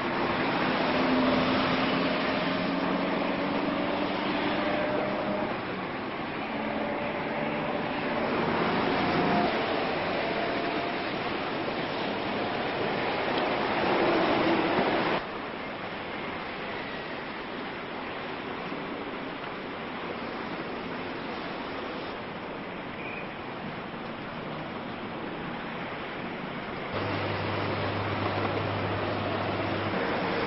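City street traffic: a steady wash of vehicle and engine noise. It changes abruptly to a quieter, even noise about halfway through. Near the end it turns louder, with a steady low hum like that heard riding inside a bus.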